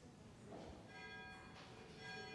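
A bell struck once about halfway through, ringing on faintly with several clear tones sounding together.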